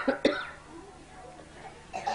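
A person coughing: two short, sharp coughs in the first half-second.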